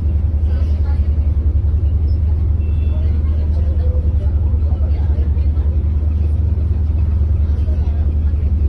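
Steady low drone of a passenger ferry's engines heard from its deck, with a fast, even throb.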